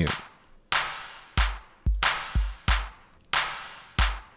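Sampled kick drum and hand clap pattern played back from EXS24 sampler tracks, each hit trailed by a long reverb tail. The first hit is reverb alone; from about a second and a half in, the deep dry kick is heard with the hits as the dry signal is unmuted.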